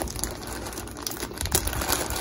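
Small plastic zip-top bag crinkling as it is handled, a run of light crackles and ticks.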